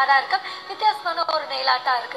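A woman talking, with music playing underneath her voice.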